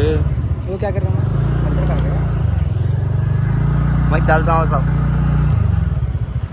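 Motorbike engine running as it rides slowly, its low pulsing beat settling into a steady hum about a second in. Brief speech is heard over it.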